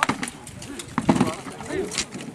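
Sharp knocks of weapons striking shields and armour in an armoured melee, a few separate hits, with voices shouting over them.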